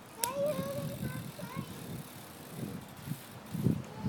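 Small BMX bicycles rolling over a concrete driveway, giving an uneven low rumble. There is a sharp click about a quarter-second in.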